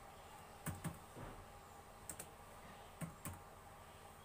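Faint, slow typing on a computer keyboard: about seven separate key presses, irregularly spaced, as a line of text is entered one letter at a time.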